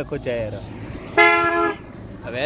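A vehicle horn honks once, a steady blast of about half a second a little past the middle, the loudest sound here.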